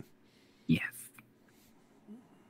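Speech only: one short spoken "yes" a little under a second in, with quiet room tone before and after it.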